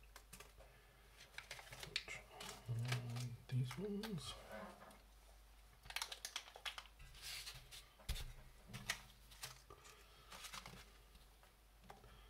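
Small plastic bags of screws and parts rustling and crinkling as they are picked up and set down on a bench, with scattered light clicks and taps from the parts inside.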